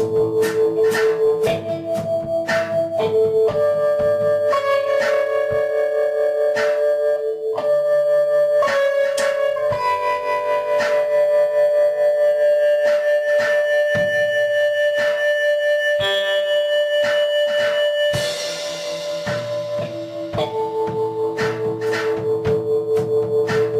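Instrumental band music played live: held guitar and keyboard notes that shift pitch every few seconds over an even pulse of strikes, with a hissing swell near the end.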